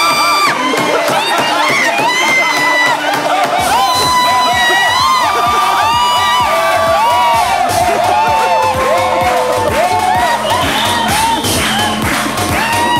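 Studio audience and panel cheering and shouting. About three and a half seconds in, music with a steady beat comes in and plays under the crowd noise.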